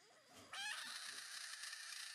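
A frog's distress scream after being poked: a sudden squeal that rises in pitch about half a second in, then a long, harsh, steady shriek.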